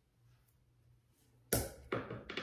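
Low room tone, then about one and a half seconds in a sudden thump and scuffing rustle as a hand knocks against the recording camera or phone.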